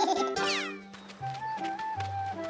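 Squeaky, high-pitched cartoon character voices with a quick falling glide in the first second, then simple background music: held melody notes over a low bass line.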